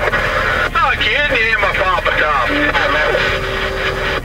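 Indistinct voices over a two-way radio, over a constant noisy hiss. Near the end a steady tone holds for about a second.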